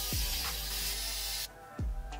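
Aerosol can of hair product sprayed into the hair in one steady hiss lasting about a second and a half, then cut off suddenly.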